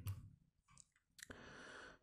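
Near silence: room tone, with a single faint click a little over a second in, followed by a low hiss.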